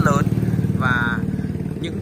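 A small engine running steadily nearby with a low, fast-pulsing rumble. A brief voice sounds about a second in.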